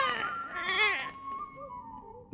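A baby crying: a long, rising-and-falling wail that tapers off and fades out in the first second and a half.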